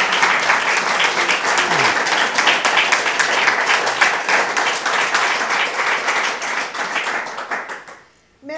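An audience applauding steadily. The clapping thins out and dies away near the end.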